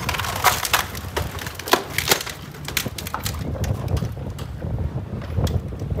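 A large steel yacht hull crushing the end of a concrete dock: a run of sharp cracking and splintering snaps, thickest in the first three seconds and sparser after, over a steady low rumble.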